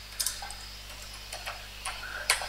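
Computer keyboard keys clicking a few separate times, softly, as a word is typed, over a faint steady hum.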